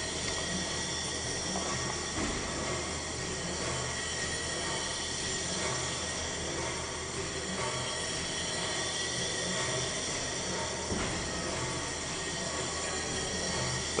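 Large triple-expansion pumping engine turning over slowly on compressed air instead of steam, a steady mechanical running noise with no sharp knocks.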